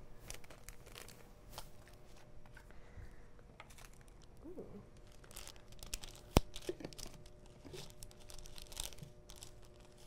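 Small plastic glitter packets crinkling and being torn open, with scattered light crackles and one sharp click about six seconds in.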